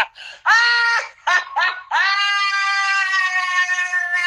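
A man laughing hysterically in high-pitched squeals: a short squeal, two quick yelps, then a long held shriek from about two seconds in.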